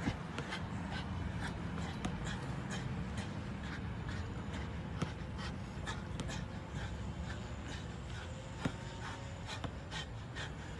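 Quiet outdoor background: a steady low rumble with faint scattered light clicks.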